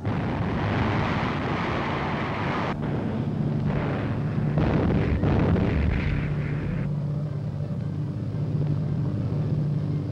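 Artillery fire and shell explosions on a 1940s newsreel soundtrack: a dense, continuous rumble that changes abruptly every second or so. In the last few seconds the sharper noise falls away, leaving a steady low drone.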